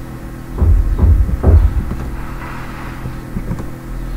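Steady low electrical hum with a few loud, low thumps about a second in.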